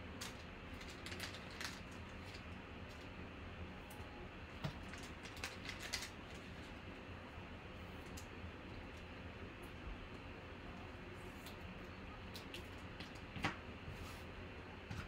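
Faint scattered clicks and light ticks of trading cards being handled and shuffled by hand, over a low steady room hum.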